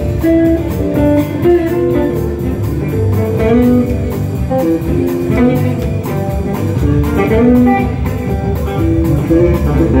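Live rock band playing an instrumental passage: electric guitars and bass over a steady drum beat.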